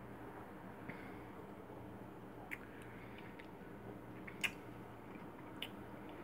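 Quiet sipping of a frozen daiquiri slushy: a few soft mouth clicks, the loudest about halfway through, over a low steady hum.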